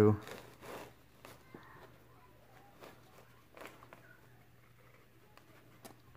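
Nylon webbing strap of a binocular harness being pulled through its buckle and loops: faint sliding and rustling with a few light ticks.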